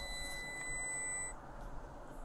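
A steady, high-pitched electronic beep tone that cuts off suddenly about a second and a half in.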